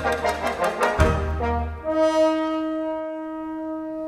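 Symphony orchestra playing with accented, rhythmic full-orchestra chords for the first second or two, then a French horn holding one long note over near silence from the rest of the band.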